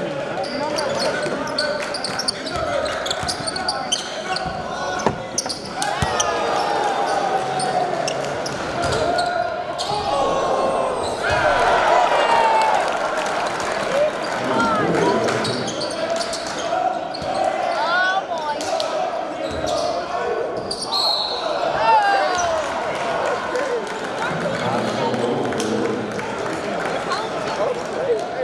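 Basketball game sound in a gym: a ball bouncing on the hardwood floor amid continuous crowd chatter and shouting voices, echoing in a large hall.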